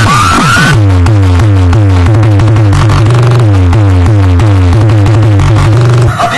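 Electronic dance music played very loud through a large DJ sound system of horn-loaded speakers and bass cabinets, with a heavy bass line and a run of repeating falling sweeps. About a second in, the bright top end drops away and the bass line comes in.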